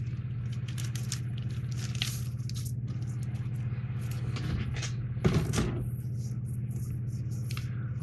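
Paper rustling and crackling as an old printed instruction sheet is handled, with a louder rustle about five seconds in, over a steady low electrical hum.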